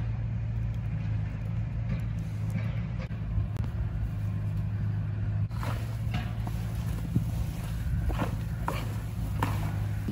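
Hands mixing coated soya chunks in a plastic tub, giving irregular wet squishing and rustling from about halfway in, over a steady low mechanical hum like a running engine or generator.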